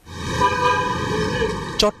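A steady horn-like tone with many overtones over a low rumbling noise. It lasts almost two seconds and cuts off suddenly as speech begins.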